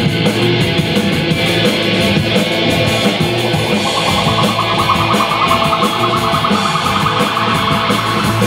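Live rock band playing an instrumental passage on electric guitars, bass and drums, with a high lead line coming in about four seconds in.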